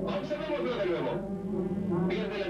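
A man's voice speaking.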